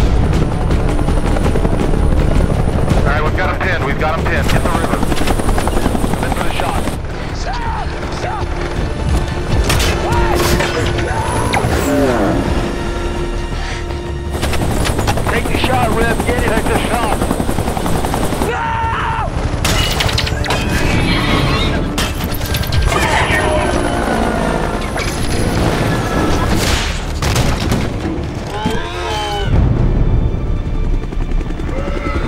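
Action-film sound mix dominated by a low-flying helicopter's rotors, over dramatic music, with several sudden booms and shouted voices.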